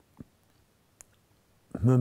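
A pause in a man's speech: quiet room tone, broken by a short low sound and then a single sharp click about a second in, before his voice resumes near the end.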